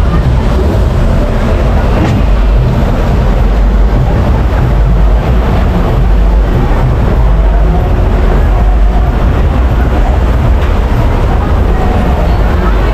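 Big Splash water-ride boat gliding along its water channel into the station: a steady, loud low rumble of moving water and ride machinery, with fairground noise behind it.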